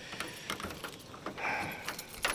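Faint jingling of keys with small clicks of handling.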